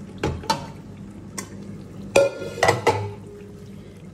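Wooden spoon knocking and scraping against the inside of an aluminium pot as thick ground spinach is scraped out of it. There are about six sharp knocks, the loudest a little past halfway, ringing briefly in the metal.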